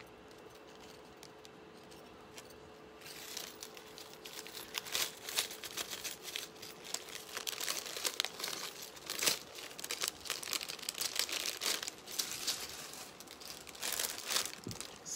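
Jewelry packaging and pieces being handled and sorted: dense crinkling and rustling with many small clicks, starting about three seconds in after a quiet opening with a faint steady hum.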